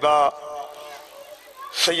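Speech: a man's voice in short phrases at the start and again near the end, with quieter sound between.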